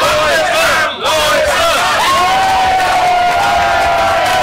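Wrestling crowd chanting and shouting together in short repeated calls, going over into one long drawn-out shout from about two seconds in.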